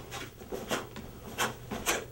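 Sharp swishes and snaps of a cotton karate gi as a practitioner throws quick blocks and strikes in a kata, four in quick succession, the loudest near the end, with bare feet brushing the mat.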